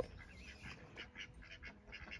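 Mallard ducks quacking faintly in many short calls as they beg for food, after a sharp click right at the start.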